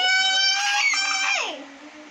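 A long, high-pitched shouted call of the name "Jory", held for about a second and a half before falling away.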